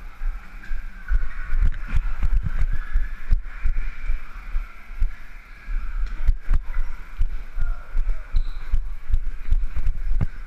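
Running footsteps jolting a body-worn camera: irregular low thuds a couple of times a second over a steady background hiss.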